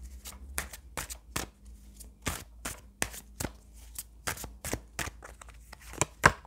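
A deck of tarot cards shuffled by hand: a string of crisp, irregular card clicks, about three a second.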